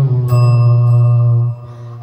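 A boy singing an Arabic song into a microphone, holding one long steady note for about a second and a half before it drops away.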